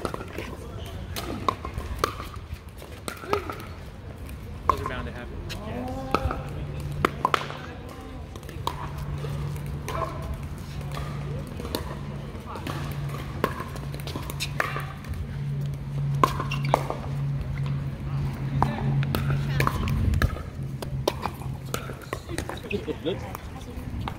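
Pickleball rally: sharp pops of paddles striking a plastic pickleball, and the ball bouncing on the hard court, coming irregularly about every second.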